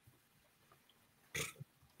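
A quiet pause broken, about one and a half seconds in, by a single short throaty vocal noise from a person.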